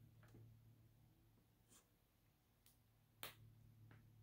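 Near silence with a faint low hum, broken by a few faint clicks from handling a small plastic snap-cap sample vial; the clearest click comes about three seconds in.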